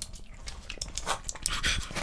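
A person panting and sucking air through the mouth in short, breathy huffs, the strongest about three-quarters of the way in, as from the burn of red king chillies.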